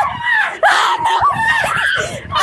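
A person screaming and shrieking in fright, several high cries one after another.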